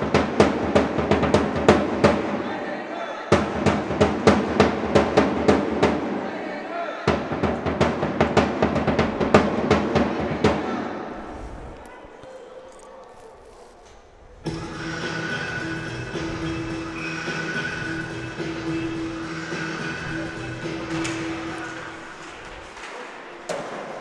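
Music with a steady drum beat, breaking off briefly twice and fading out about eleven seconds in; from about fourteen seconds a steady held tone with a higher note above it runs until near the end.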